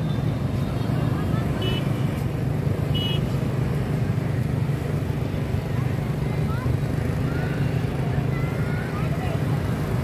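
Steady city street traffic: motorbikes and cars passing on a wide road, with a continuous low engine hum and tyre noise, and two short horn toots about two and three seconds in.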